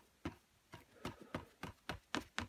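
Faint, light taps of a paintbrush being worked at the palette and on the paper, about three to four a second.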